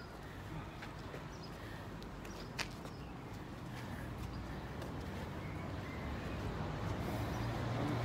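Quiet outdoor street ambience: a low rumble that slowly grows louder towards the end, with a few faint clicks and one sharper click about two and a half seconds in.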